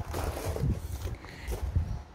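Footsteps on loose gravel: a few uneven crunching steps, with the rustle of a phone being carried.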